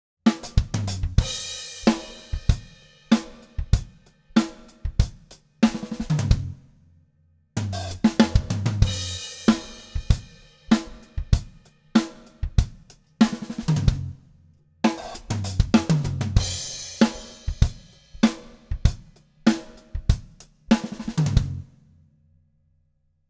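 Drum kit playing two bars of a groove, then a fill built on a six-stroke roll: an accented snare stroke and strokes on snare, rack tom and floor tom, closed by a bass drum note that lands as a dead stop on beat one. The whole phrase is played three times, each ending abruptly in silence.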